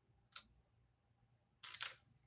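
Near silence, broken by one faint click about a third of a second in and a brief soft scuffing noise just before the end.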